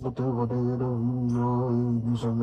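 A man's low voice holding one long chanted note, like a mantra, with a brief break just at the start.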